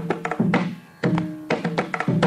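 Mridangam playing quick clusters of strokes, its pitched head ringing under them, in phrases about every second and a half, as in the percussion passages of a Carnatic concert.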